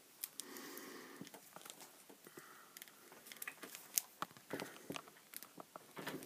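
Faint handling of a plastic action figure: scattered small clicks and light rustling as a snap-on part is fitted to it.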